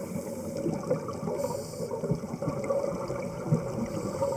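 Underwater sound picked up through a camera's waterproof housing: a steady rumbling crackle of a scuba diver's exhaled bubbles and the water around the camera. A brief high hiss comes about a second and a half in.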